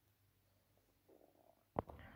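Near silence: quiet room tone, with a faint soft sound about a second in and a single sharp click just before the end.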